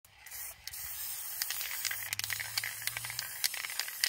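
Aerosol spray can hissing as paint is sprayed through a metal stencil, with a short break about half a second in and small sharp clicks through the spray.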